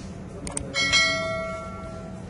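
Subscribe-button sound effect: two quick mouse clicks about half a second in, then a bright notification bell ding that rings out and fades over about a second.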